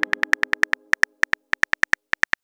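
Simulated phone keyboard typing sound from a chat-story app: rapid, even key clicks, about ten a second, with a short pause about a second and a half in. Under the first clicks the tail of the app's message chime fades away.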